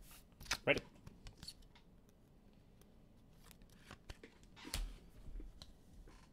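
Trading cards and their plastic sleeves handled by hand: faint scattered clicks and rustles of card stock and plastic, with one dull thump a little before five seconds in.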